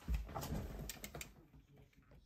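Die-cutting machine plates being handled and set down on the machine's platform: a low thump at the start, then a few light clicks and taps.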